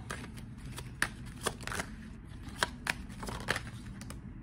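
A tarot deck being shuffled by hand: a run of short, sharp card slaps and clicks at uneven intervals.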